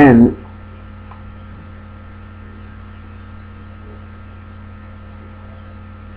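Steady electrical hum with a faint hiss underneath, unchanging through the pause; a single spoken word cuts in at the very start.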